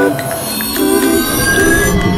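Soundtrack music overlaid with a high, sustained ringing sound effect made of several high tones, one of which slowly rises in pitch.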